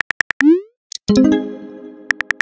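Phone-keyboard typing clicks in a fast even run, ending with a short rising swoosh as the text message is sent. About a second in comes a bright chime whose ringing tones fade out.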